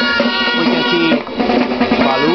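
Catalan folk band of grallas (reedy double-reed shawms) playing a melody over drums.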